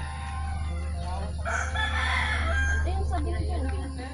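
A rooster crowing once, a single call about a second and a half long that rises and then holds.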